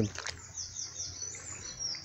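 A bird singing: a quick run of high, falling whistled notes, then a longer, drawn-out note near the end.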